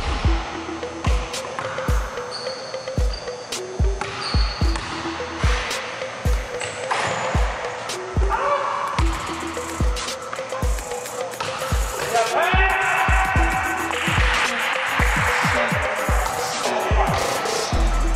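Basketball being dribbled on a hardwood gym floor: a run of sharp bounces echoing in the hall, about one or two a second, quickening into a rapid dribble near the end.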